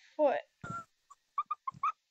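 Girl's stifled giggling: a short breathy burst of air, then five short, high-pitched squeaky giggles in the second half.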